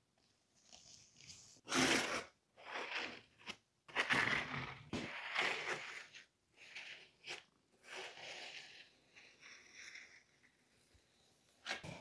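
Plastic spreader dragged across a resin-soaked carbon fibre veil in irregular strokes, spreading resin over the layup: a series of scraping, swishing rubs.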